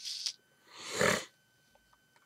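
A man's short breathy laugh: one exhale that swells and stops a little past a second in.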